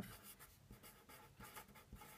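A felt-tip pen writing on paper: faint, quick scratchy strokes as a word is written out.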